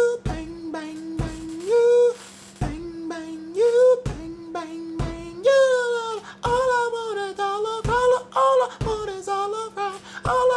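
A man sings a wordless improvised melody. Long held notes slide upward, then become a more moving line about halfway through. Deep thumps from his fist knocking on the wall keep the beat, roughly one every second and a half.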